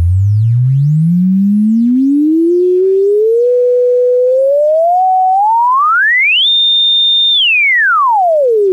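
Harvestman Piston Honda Mk II wavetable oscillator putting out a clean, near-sine tone, swept in pitch by its frequency knob. The pitch climbs steadily from a low bass hum to a high whistle over about six and a half seconds, holds there briefly, then drops quickly near the end.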